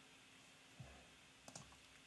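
Near silence with a few faint clicks, about a second in and again near the end, from hands working the radio and microcontroller board.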